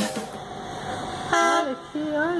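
Background music cuts off at the start, then after a quieter stretch a gull gives one short, harsh call about a second and a half in.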